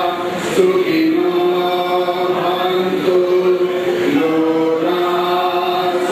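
A man chanting devotional verses in long sung notes, each held for a second or two, with slides up and down from one pitch to the next.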